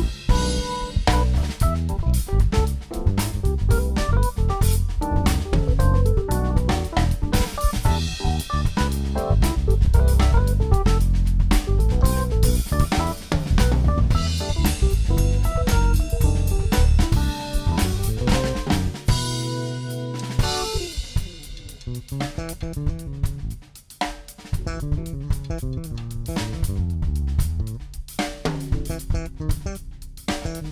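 Electric bass and drum kit playing busy jazz-fusion lines together. About two-thirds of the way through they break briefly on a held note, then carry on more lightly.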